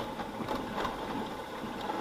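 Motorcycle riding slowly over a rough, broken road: steady engine and road noise, with no distinct events.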